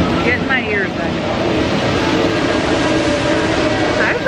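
Roller coaster train running along its track: a loud, steady rumble mixed with wind rushing past the riders, with a few brief high squeals about half a second in.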